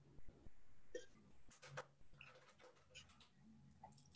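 Near silence with a few faint, short swallowing sounds from a person drinking from a mug.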